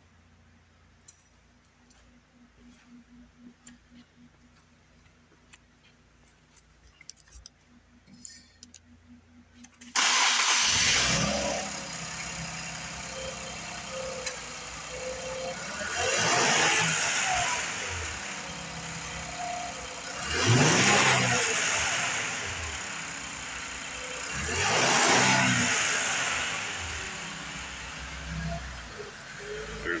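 A 2017 Infiniti Q60's 3.0-litre twin-turbo V6 is started about ten seconds in, after a few faint clicks. It settles to a steady idle and is revved three times, each rev rising and falling in pitch.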